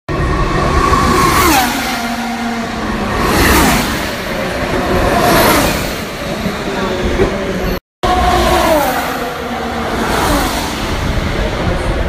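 Several race cars passing at speed one after another down the straight. Each engine note swells, then drops in pitch as the car goes by.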